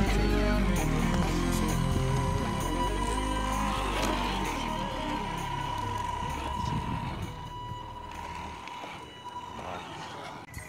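Instrumental hip-hop backing track with heavy bass and no vocals. The bass drops out about halfway through, and the music fades away toward the end while a single high note is held.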